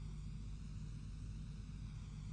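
Faint steady low hum with a light hiss: the background noise of the recording.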